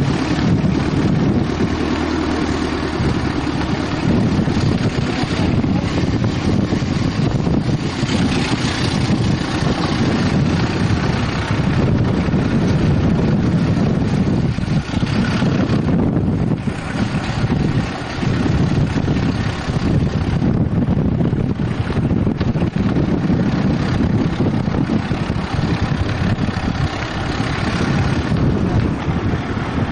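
Steady rumble of a car driving slowly, heard from the open car window, with wind buffeting the camcorder microphone.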